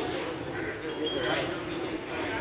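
A few sharp metallic clinks of gym weights about a second in.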